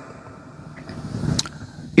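Faint low background rumble that swells and fades during a pause in speech, with a single sharp click near the end.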